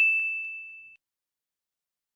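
A single high, bell-like ding sound effect that fades out within about a second, marking the reveal of the correct quiz answer.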